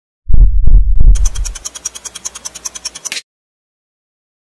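Produced intro sound effect: three deep bass hits about a third of a second apart, then a fast, bright ticking pattern of about eight ticks a second that fades and cuts off suddenly a little after three seconds in.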